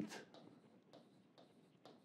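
Near silence with a few faint, short ticks of a pen tapping on the writing board as figures are written.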